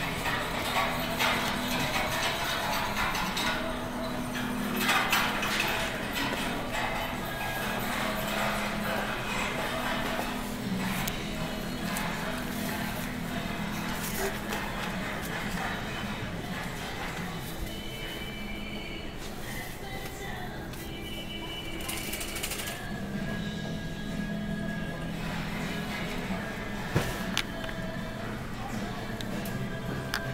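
Supermarket ambience: background music playing over the store's speakers, with a shopping cart rolling and rattling and faint voices.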